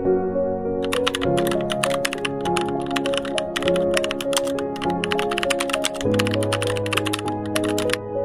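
Rapid, irregular typing clicks, like keys being struck, start about a second in and run over soft background music with sustained tones.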